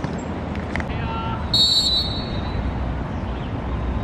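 A short, shrill blast of a referee's whistle about one and a half seconds in, over steady background noise and faint distant shouts on a football pitch.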